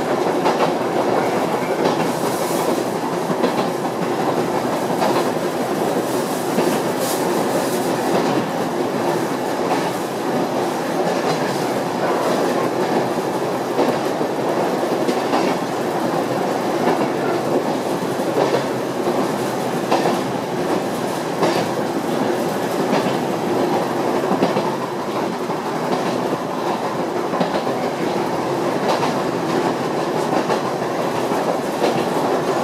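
Yoro Railway electric train running at steady speed, heard from inside the rear of the car: a continuous rumble of wheels on rail with scattered short clicks from the track.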